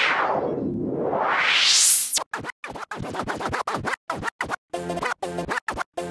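Electronic DJ transition effect: a noise sweep falls in pitch and rises again over about two seconds. Then the music is chopped into rapid, stuttering scraps with short silences between them, much like turntable scratching.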